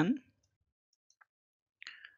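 The end of a spoken word, then near silence broken by two faint short clicks, one about a second in and one near the end.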